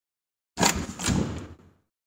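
Two sharp knocks about half a second apart with a short rattling tail that dies away within about a second.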